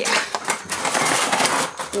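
Wire-mesh cat trap cage rattling and clattering as it is lifted and carried with a frightened cat inside, a dense run of sharp metallic clicks.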